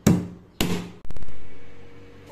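Two sharp knocks about half a second apart as a heavy stone cylinder is pressed and knocked down onto a sheet of dough on a hard kitchen countertop, then a louder sudden noise about a second in that fades away slowly.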